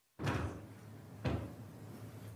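Two dull thumps, about a second apart, over a faint low hum, picked up by a meeting-room microphone.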